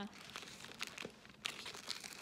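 A bag being handled, crinkling and rustling in small, irregular crackles.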